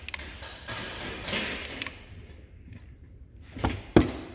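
Hand-pumped hydraulic hose crimper being worked as it squeezes a collar onto an air brake hose fitting: faint mechanical clicks and handling noise, with a sharper click near the end.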